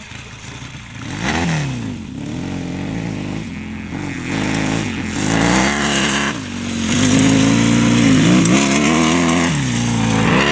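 Yamaha XS650 parallel-twin motorcycle engine being ridden hard on a dirt track, revving up and easing off several times. It grows louder as the bike comes close, loudest about seven to eight seconds in.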